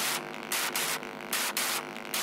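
Dark techno from a DJ mix, in a stretch with no kick drum or bass: regular hissing noise hits, about two a second, over a sustained synth chord.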